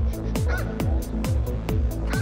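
Electronic dance music with a steady kick drum at a little over two beats a second, with hi-hat ticks and held synth tones.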